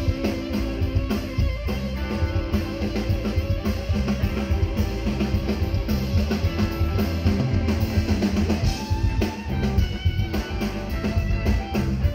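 Live blues-rock band in an instrumental passage: a lead electric guitar plays a solo of bent notes with vibrato over a steady drum kit groove.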